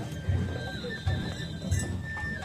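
Japanese festival float music (ohayashi): a high flute holding long notes that step in pitch, over a light, clopping drum rhythm.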